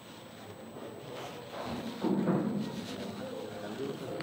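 Speech, quieter in the first second or so and louder from about two seconds in.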